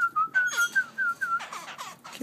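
A quick run of short, clear whistled notes at an even pitch, about five a second, breaking into a few falling slurred notes near the end.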